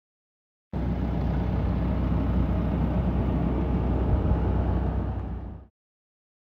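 A steady, loud low rumble with a noisy hiss above it, starting suddenly under a second in and cutting off suddenly shortly before the end.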